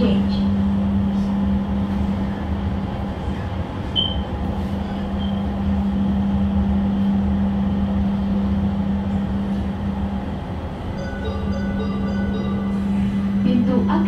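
Inside an INKA-built light-rail train car: a steady electrical hum over a low running rumble as the train travels toward a station stop, with a few faint high tones near the end.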